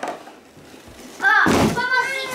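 A child's voice calls out a little over a second in, over a brief thud at the same moment.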